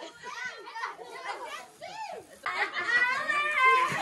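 Indistinct chatter of several voices, children among them, louder in the second half.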